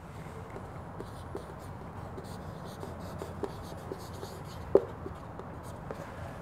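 Marker pen writing a word on a whiteboard: faint, scattered scratching strokes, with one sharper tap nearly five seconds in.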